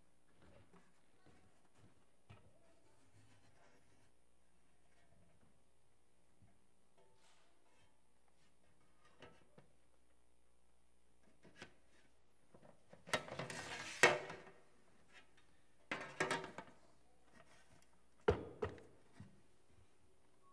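Faint room hum, then handling noise at a wooden pulpit picked up close by its microphone: a cluster of knocks and rustling, then two more separate thuds, as a laptop and other items are set down on the lectern.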